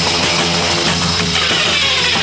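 Hard electronic dance music in a breakdown: the kick drum drops out and sustained, distorted synth tones carry on alone.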